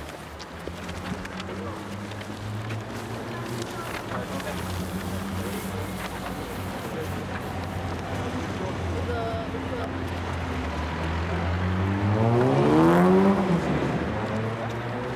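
Steady low hum of a vehicle engine running in the street, with a car engine revving up and falling away near the end.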